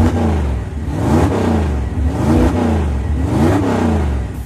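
An engine revving up and down over a steady low rumble, its pitch rising and falling about once a second.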